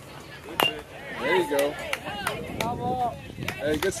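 A single sharp crack about half a second in as the pitched baseball arrives at home plate, the impact of a youth baseball pitch. Spectators' voices call out over the next few seconds.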